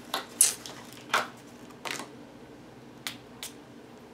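A few short sniffs through the nose as a perfume sample is smelled, the first the loudest, followed about three seconds in by two light clicks.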